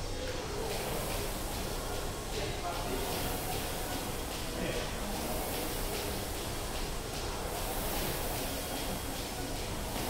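Air-resistance rowing machine whooshing in a steady rhythm, the flywheel noise swelling with each stroke about every two and a half seconds. Indistinct voices run underneath.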